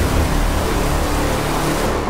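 A loud, steady rushing noise with a deep rumble beneath it, a dramatic sound effect on a drama's soundtrack behind a title card.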